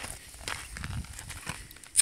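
Soft shuffling and small knocks of handling, then one sharp tap near the end as a steel hatchet blade strikes the ice in a frozen stock tank.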